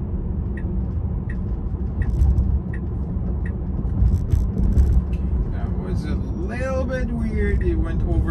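Tyre and road noise inside a Tesla Model 3's cabin while driving at about 34 mph: a steady low rumble, with a light tick repeating about every 0.7 seconds through the first half.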